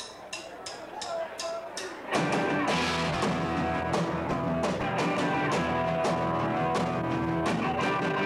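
A count-in of sharp clicks, about three a second, then a live rock band comes in with drum kit, bass, guitar and keyboards about two seconds in, playing an upbeat song.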